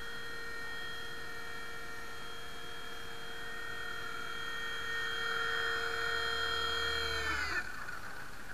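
Nine Eagles Solo Pro 270a RC helicopter's small electric motor whining at a steady pitch, getting louder about five seconds in. Near the end it winds down quickly, its pitch falling away as the motor spools down.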